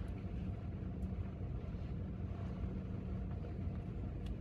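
A steady low hum of room noise during a silent pause, with no speech.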